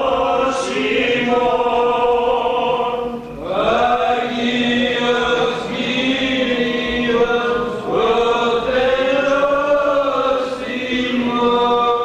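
Several men's voices singing Greek Orthodox Byzantine chant together, with long held notes that slide between pitches. There is a short breath-break about three seconds in, after which the voices come back in with a rising glide.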